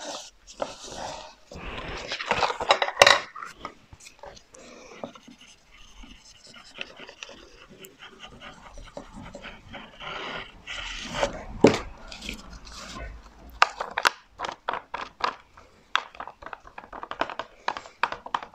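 Paper and greyboard being handled and smoothed by hand on a cutting mat, with rustling and rubbing bursts. Scattered light taps and clicks run through it, the sharpest about two-thirds of the way through and a quick run of them shortly after.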